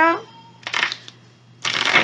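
Oracle cards being shuffled or handled: a short papery rustle about half a second in, then a louder rustle of cards near the end.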